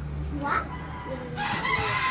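A rooster crowing in the background, with a long crow beginning about a second and a half in and a short rising call just before it.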